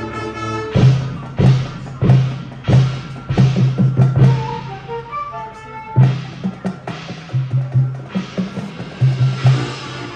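High school marching band playing its field show: loud accented ensemble hits with drums and cymbals, each ringing off, come roughly every half second to second. About halfway through they drop back to a quieter stretch of pitched mallet notes before the loud hits return.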